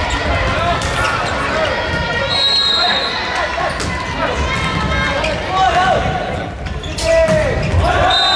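Indoor volleyball rally: the ball is struck with sharp smacks several times, among players' loud shouts and calls.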